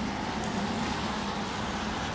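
Steady street traffic noise, an even hiss from a wet road.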